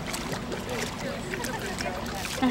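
Water splashing and streaming off a sea turtle as it is lifted out of a tank, with a crowd chattering in the background.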